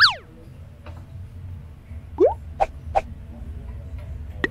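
Comic sound effects added in editing: a loud whistle-like swoop, rising and falling, at the start, then a short rising boing and a few quick pops about two to three seconds in.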